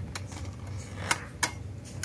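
A few sharp clicks and light knocks of a 1:18 scale die-cast model car's hard plastic and metal parts being handled, two of them close together a little past the middle.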